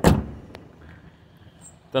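The tailgate of a Skoda Superb hatchback being shut: a single solid thunk that dies away within about half a second, followed by a faint click.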